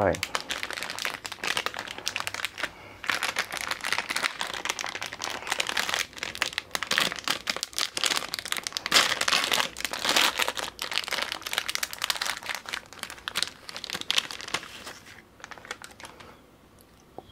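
Plastic wrapper of an ice cream bar crinkling and crackling as it is torn open and pulled off the bar, a dense run of crackles that dies away about a second before the end.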